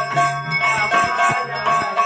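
Temple bells ringing during arati worship: several bells at different pitches struck over and over at an uneven rhythm, their tones ringing on and overlapping.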